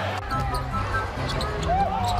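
A basketball bouncing on a hardwood arena court over a steady crowd din.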